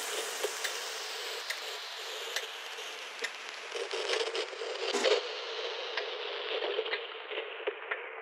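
Outro texture of a future bass track: a crackling noise bed with scattered clicks, one louder crack about five seconds in. The treble is steadily filtered away as it fades out.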